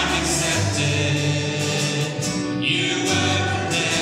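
Worship band performing a praise song: several men's and women's voices singing together over acoustic guitars and an upright bass.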